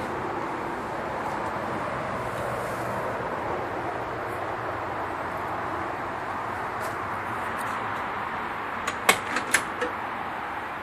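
Steady background hiss, then near the end a quick run of four or five sharp clicks and clunks: a 1967 Ford Mustang's door handle and latch as the door is opened.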